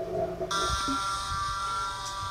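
Audio of a comedy-clip compilation playing back: a short lower tone at the start, then a steady electronic tone of several high pitches that comes in suddenly about half a second in and holds.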